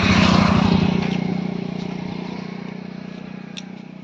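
A small motor vehicle's engine running close by with a fast, even pulsing hum, loudest in the first second and then fading steadily.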